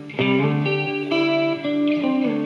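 Guitar music: sustained chords and melody notes changing every half second or so, after a brief pause at the start.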